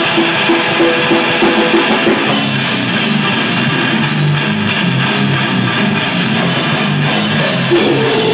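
Live grindcore band playing loud: distorted guitar and bass riffing over a drum kit. The riff changes about two seconds in, and regular cymbal hits carry on after the change.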